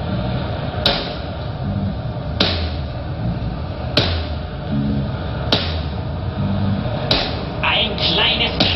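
Slow live band music: a sharp drum hit about every one and a half seconds over a low bass line that moves between notes.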